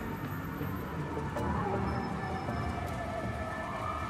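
City street traffic noise with one sustained high tone gliding slowly, falling over the first two seconds and rising again near the end.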